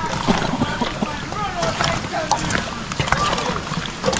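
Several people talking and calling in the background, overlapping, over a steady rushing noise.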